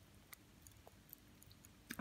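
Near silence with a few faint, scattered tiny pops: popping candy crackling in an open mouth.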